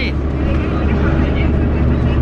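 A local bus's engine running, heard from inside the passenger cabin as a steady low drone.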